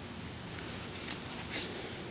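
English bulldog puppy heard up close: a few short, soft bursts of breath or scuffing about half a second apart over a steady hiss.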